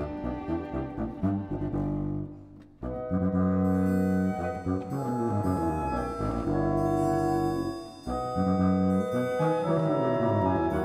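Classical orchestral music with winds and brass playing full held chords. There are short breaks about three and eight seconds in, and each is followed by a loud sustained chord.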